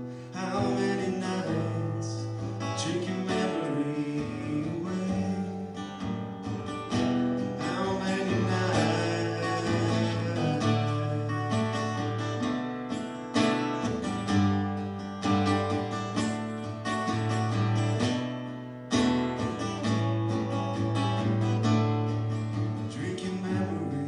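Acoustic guitar strummed steadily, the chords changing every couple of seconds, in an instrumental passage of the song.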